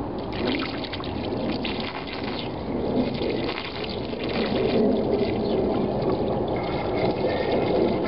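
Green coolant poured in a steady stream from a plastic jug through a funnel into a new, empty car radiator, filling it.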